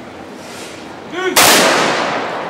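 A ceremonial salute volley from a military honour guard's rifles fired together as one loud crack about a second and a half in, its echo ringing on and slowly fading.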